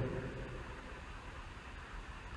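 Faint room tone with a steady hiss. The echo of the last spoken word dies away in the first half second.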